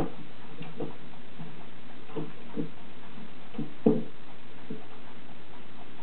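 A pet turtle bumping around, making a series of irregular, dull knocks, the loudest about four seconds in.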